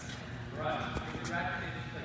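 A tennis ball struck sharply once about a second in, a single short knock that rings in the large indoor court hall, with a few fainter ball knocks around it.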